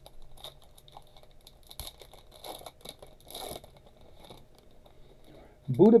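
Trading cards being handled and slid against one another: faint scattered clicks and light brushing swishes, a few a little louder near the middle.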